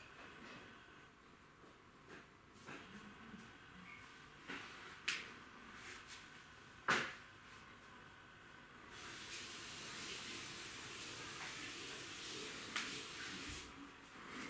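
A few faint knocks and clicks, the loudest one about seven seconds in, then a steady soft hiss from about nine seconds on.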